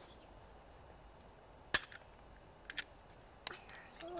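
Riveting tool closing an eaglet's rivet leg band: one sharp pop a little under two seconds in, then a few lighter clicks of the tool.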